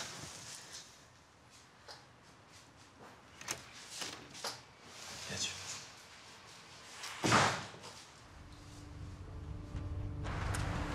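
Quiet kitchen room tone with a few soft knocks and clicks of movement, then one louder knock about seven seconds in. A low hum rises near the end.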